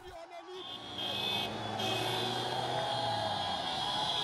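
Street crowd noise with motorcycle engines running among many voices, starting about half a second in. A steady low engine note is heard for a couple of seconds, under a high shrill tone.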